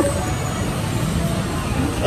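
Steady low rumble and hiss of shopping-mall background noise picked up on a phone microphone, with faint voices in it.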